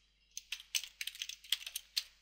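Typing on a computer keyboard: a quick run of separate keystroke clicks, starting about a third of a second in.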